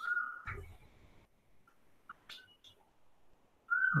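Dry-erase marker squeaking on a whiteboard while writing: a short squeak at the start and another just before the end, with a soft knock about half a second in and a few faint ticks between.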